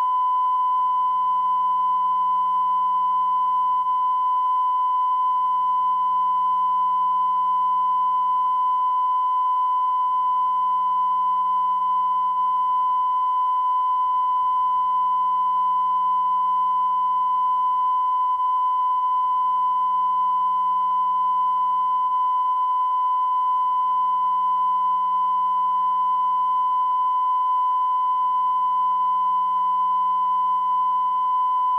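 Steady electronic test tone: one unbroken high-pitched beep held at constant pitch and loudness, with a faint low hum underneath that dips every four to five seconds.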